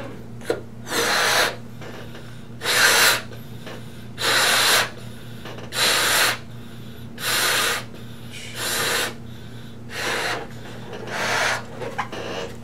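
A person blowing up a rubber balloon by mouth: eight long puffs of breath, about one every second and a half, with quieter breaths drawn in between.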